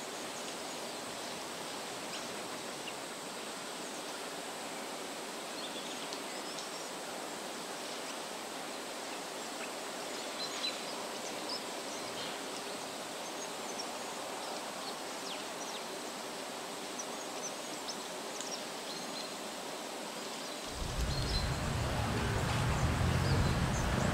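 Outdoor ambience: a steady, low-level background hiss with faint, scattered high chirps. Near the end a louder low rumble comes in.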